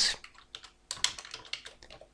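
Typing on a computer keyboard: an uneven run of short key clicks.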